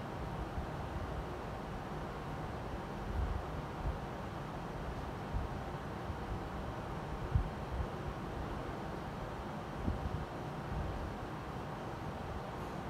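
Steady low rumble with hiss, a background noise floor, with a faint steady tone near the middle of the range and a few brief, soft low thumps scattered through it.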